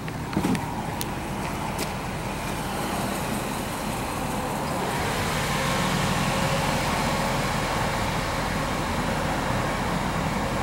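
Vehicle engine idling steadily, growing a little louder after about five seconds, with a few light clicks in the first two seconds.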